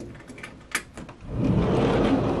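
Handling noise from a handheld camera being moved: a couple of small clicks, then a louder muffled rumble starting partway through.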